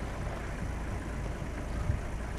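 Safari vehicle's engine running, a steady low rumble with no distinct events.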